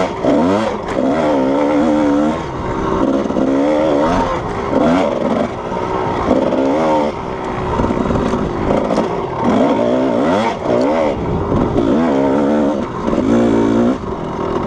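Kawasaki KDX220 two-stroke dirt bike engine being ridden hard, its pitch rising and falling over and over as the throttle is worked through the whoops.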